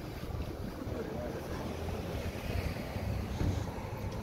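Wind rumbling on a phone's microphone as it is carried along outdoors: a steady low rumble with a light hiss above it.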